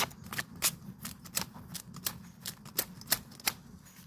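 Knife blade chopping and slicing into a fresh bamboo shoot to strip off its sheaths: a quick, irregular run of sharp cuts, about three or four a second.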